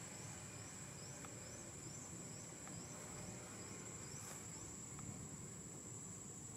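Faint outdoor insect sound: a steady high-pitched whine, with a short rising chirp repeating about three times a second that stops about halfway through.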